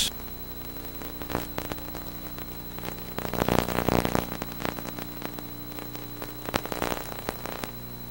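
Steady hiss and electrical hum of an old broadcast videotape's sound track, with faint, indistinct background noise swelling briefly around the middle and again near the end.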